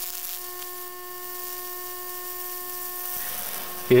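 Microwave oven transformer humming steadily while it drives high voltage through nail pins into baking-soda-wetted wood, burning a Lichtenberg pattern, with a high hiss over the hum. The hum cuts off about three seconds in.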